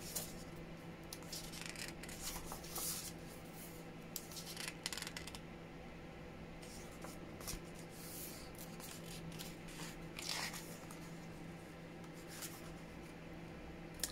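Paper pages of a large book being turned and smoothed flat by hand: soft rustles and swishes at irregular intervals, over a faint steady hum.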